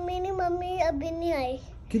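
A young child's voice in drawn-out, sing-song tones, held on steady pitches that step down partway through and break off shortly before the end.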